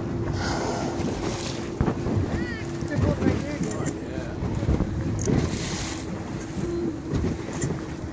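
A boat's engine running with a steady hum, under wind buffeting the microphone and water splashing around the hull.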